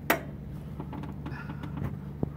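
A sharp click as the single fuel tap of a 1964 Triumph 3TA is turned by hand, followed by a few faint handling clicks.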